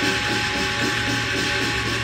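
Hainan opera percussion playing a fast, dense, even rattling roll under a few held tones from the accompaniment.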